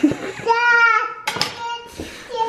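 A young child's high voice, two drawn-out calls or whines with a short gap between them.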